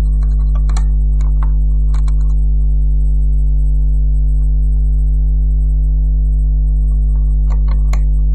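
A loud, steady electrical hum with a buzz of overtones, unchanging throughout. A few light clicks from rubber loom bands being handled on the plastic loom's pins come in the first two seconds and again near the end.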